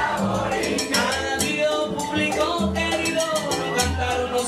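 Live salsa band playing, with piano, hand percussion and a trombone section.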